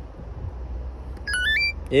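Amazon Flex app on a smartphone giving its scan-confirmation chime, a quick run of rising electronic notes lasting under half a second, about two-thirds of the way through, as a parcel label is scanned successfully.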